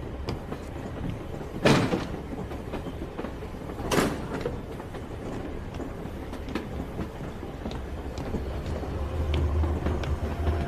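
Steady low rumble of a railway carriage in motion, with two sharp knocks, one about two seconds in and another about four seconds in.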